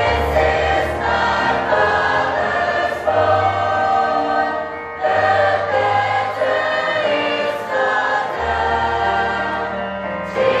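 Church youth choir of mixed boys' and girls' voices singing together, with brief breaks between phrases about three and five seconds in.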